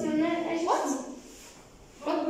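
A child's drawn-out vocal sound, a long held vowel whose pitch jumps sharply upward partway through, dying away about a second in.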